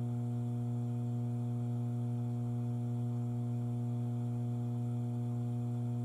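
Steady low hum, unchanging in pitch and level, from the vape chamber system's pump running while vapour is delivered into the chamber.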